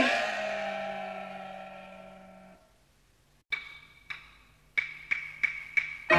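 Peking opera accompaniment: the last struck note of one take rings out and fades over about two and a half seconds. After a second of silence, sharp Peking opera percussion strokes open the next take in a higher key, six strokes coming quicker toward the end.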